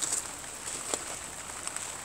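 Steady rain falling on a garden, with a few sharper single drop taps.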